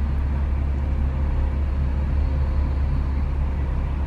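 Motorhome engine idling, heard inside the cab as a steady low hum.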